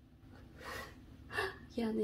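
A person's quiet breathy gasps, then a short voiced sound near the end.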